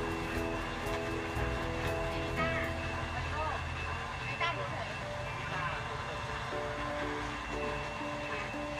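Countertop electric blender running as it blends a drink, its low motor hum dropping away about halfway through, under background music with a singing voice.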